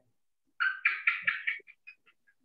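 An animal calling: a quick run of about five short, high calls within a second, then a couple of fainter ones.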